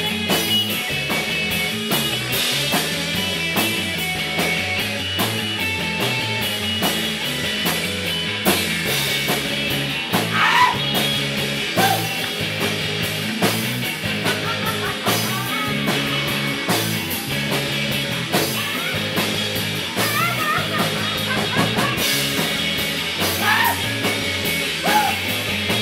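Rock band playing live: electric guitars over a drum kit, with regular drum and cymbal hits.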